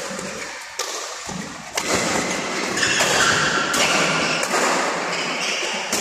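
Badminton rally: rackets striking a shuttlecock again and again in quick succession, about once every second or less.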